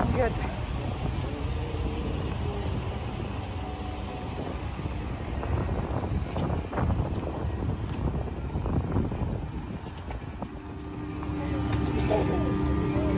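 Outdoor rumble of wind on a phone microphone while walking, with faint voices in the background. A low steady hum comes in near the end.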